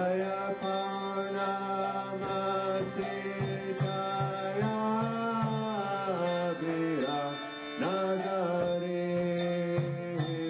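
Devotional kirtan chanting: a voice holds long notes that slide between pitches over a steady drone, with a brief break about seven seconds in. Small hand cymbals tick in a steady beat underneath.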